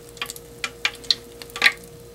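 Freshly deep-fried battered perch fillets in the fryer basket, hot oil crackling with irregular sharp pops, over a steady faint hum.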